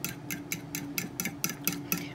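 Fork beating eggs in a ceramic bowl, clicking against the bowl in a quick steady rhythm of about five or six strokes a second.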